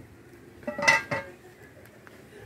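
A metal pot lid set back down onto a large cooking pot: a short clatter of a few quick clanks with a metallic ring, about a second in.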